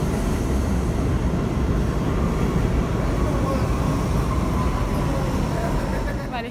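New York City subway train running past a station platform: a loud, steady rumble and rail noise, with a faint whine that slides slightly lower in the second half.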